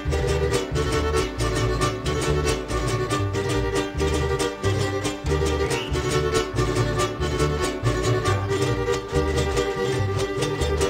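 Instrumental break of a Mexican folk son ensemble: a violin melody over rhythmically strummed guitars and jarana, with a pulsing bass beat.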